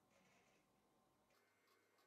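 Near silence: the soundtrack is all but mute, with no PC fan or drive sound audible.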